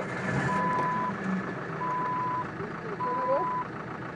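A vehicle's electronic warning beeper sounding three steady, high beeps about a second and a quarter apart, over the low sound of vehicles and a brief shout at the start.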